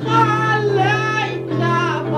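Maltese għana folk song: a solo voice sings long, sliding, ornamented notes over guitar accompaniment.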